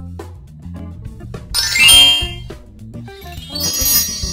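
A battery-powered toy birthday cake playing its electronic magic sound effect: a sparkling, rising chime that is loudest about halfway through, then another shimmering twinkle near the end. The effect is set off by touching the toy's magic wand to the candles.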